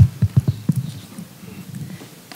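Handling noise from a stand-mounted microphone being grabbed and moved: a quick run of about six dull knocks and bumps through the mic within the first second.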